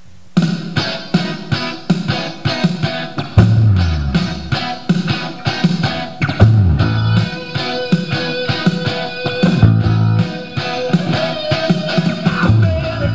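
A rock song starts abruptly about half a second in, with drums, electric guitar and an electric bass playing along to a steady driving beat.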